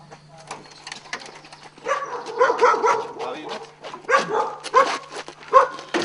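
A dog yipping and barking repeatedly over a steady low hum.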